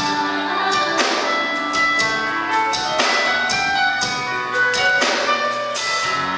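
Live pop-rock band playing an instrumental passage of a song, with a steady drum-kit beat and cymbal hits under sustained guitar and keyboard chords, without vocals.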